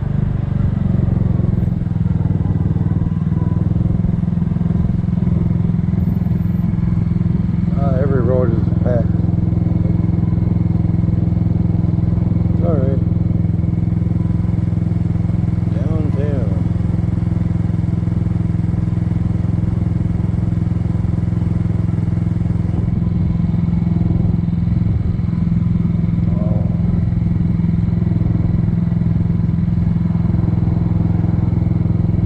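Single-cylinder four-stroke engine of a 2007 Kymco 250cc scooter running steadily at low speed, then idling while stopped in traffic.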